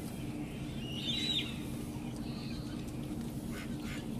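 A short bird call about a second in, over a steady low background hum, with a few faint ticks near the end.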